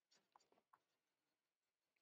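Near silence, with only a few very faint scratches of a stylus writing on a tablet.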